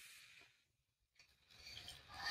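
Near silence: room tone, with faint handling of small plastic toys being put into a wooden tray near the end.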